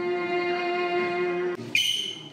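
Violin and cello duet ending on a long held note, which stops about one and a half seconds in. A sudden, loud, high-pitched sound follows just before the end.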